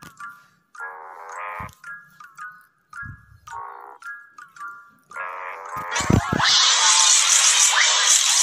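Audio-edited logo intro jingle: short chime-like notes and brief chords in a stop-start pattern, then, about six seconds in, a louder, dense burst with quick pitch sweeps.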